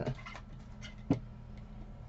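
Light handling of cut paper sheets on a craft table, with a few faint taps and one sharp click about a second in.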